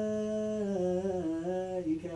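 A single man's voice chanting prayer in Arabic: one long held note that then falls away in a slow, wavering melodic turn. This is the imam's drawn-out recitation leading the standing congregation in prayer, heard in a small room.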